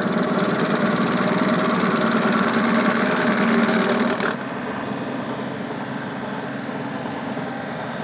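Tractor-driven PTO stump grinder's carbide-toothed rotor chewing into a hard ash stump, a dense grinding hiss over the steady drone of the tractor's diesel engine at full throttle. About four seconds in, the grinding hiss cuts off suddenly, leaving a quieter, steady machine hum.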